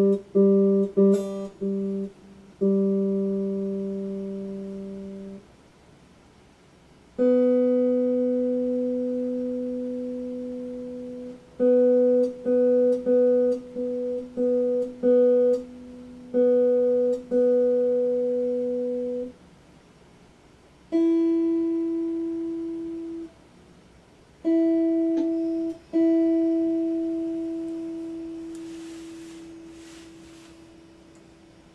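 Electric guitar being tuned: single strings plucked and left to ring out, each note dying away slowly. A lower string is picked a few times, then a higher one is picked repeatedly in quick succession, then a higher string again.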